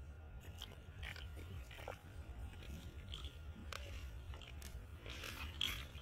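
Faint outdoor background noise: a steady low rumble with scattered small clicks and rustles, and a brief, louder rustling burst about five and a half seconds in.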